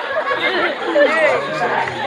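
Several voices talking and calling out over one another, with sliding, expressive pitch.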